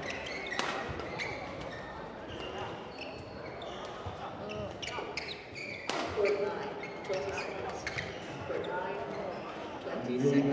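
Badminton doubles rally in a large reverberant gym hall: sharp cracks of rackets striking the shuttlecock, the strongest just after the start and around six seconds in, with short high squeaks of court shoes on the floor. People talk in the background.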